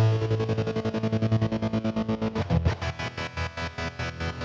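Distorted electric guitar played through a Fractal Audio Axe-FX III patch with a stutter effect that chops the sound into a rapid, even stream of pulses. Partway through, the held chord changes to a lower one.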